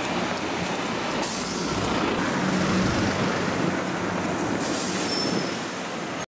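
Street traffic with double-decker buses: a steady engine rumble and road noise, with two bursts of hiss, about a second in and near the end.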